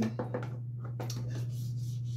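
A steady low hum with a few faint, light clicks and taps near the start and one about a second in: small handling noises.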